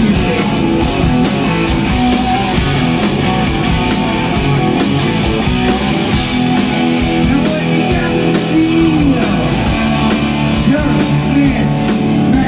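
Live rock band playing loudly: distorted electric guitar, bass guitar and drum kit, with a steady beat of cymbal strokes.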